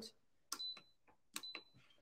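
Two button presses on a digital slow cooker's control panel, each a small click followed by a short high beep, about a second apart, as the cooker is set to cook on low.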